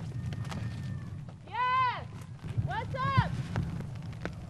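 Young children calling for their mother from far off: two long, high shouts, each rising and then falling in pitch, over a low steady rumble.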